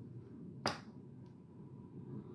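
A single sharp click or snap about two-thirds of a second in, then a faint second tick, over a low, quiet background rumble.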